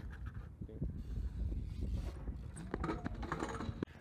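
Handling noise from a camera carried at a BMX bike's handlebar: a steady low rumble with scattered small clicks and knocks. Faint voices come in about three seconds in.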